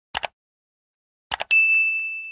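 Subscribe-button animation sound effect: two quick double mouse clicks, the second about a second after the first, then a bright bell ding that rings on and fades.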